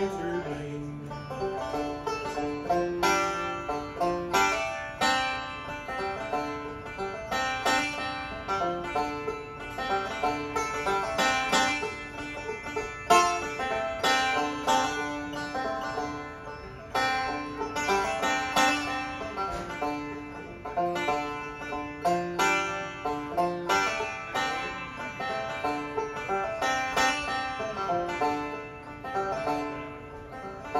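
Bluegrass string band playing an instrumental break with no singing: five-string banjo rolling prominently over strummed acoustic guitar, mandolin chop and dobro.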